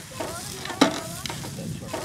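Pork chops sizzling over charcoal on a small grill grate, with a sharp click of metal tongs against the grate a little under a second in.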